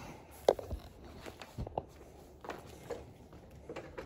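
A few scattered light knocks and clicks, the sharpest about half a second in, from handling a Hoover upright vacuum before it is switched on; no motor is running.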